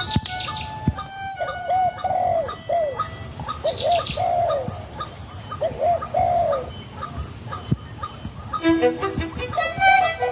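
A dove cooing in three short repeated phrases of arched, falling notes, with a higher bird chirping briefly at the start and about four seconds in. Music comes back in near the end.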